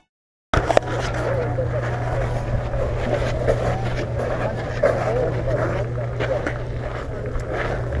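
A steady low engine hum with indistinct voices in the background, starting suddenly after a brief silence.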